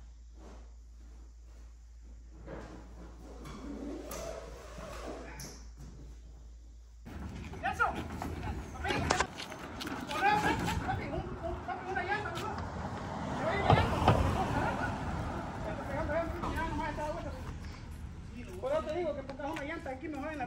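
A few seconds of quiet room tone with a low hum, then voices with knocks and clatter as a crew of movers tilts and lifts a crated greenhouse into a moving truck, the loudest knocks about two seconds in and near the middle.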